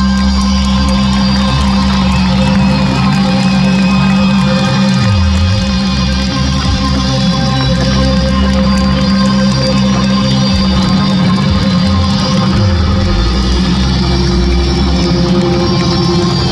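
Rock band playing live with electric guitars, bass, drums and keyboards, in a loud, steady instrumental stretch of held notes with no singing, heard from the audience.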